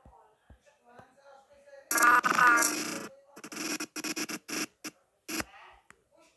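A person's voice: a sudden loud vocal outburst about two seconds in, followed by several short loud vocal bursts, over faint murmuring voices.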